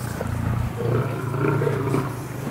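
Lion growling: a low, pulsing growl lasting nearly two seconds, part of an aggressive squabble in which a male lion keeps pressing another lion.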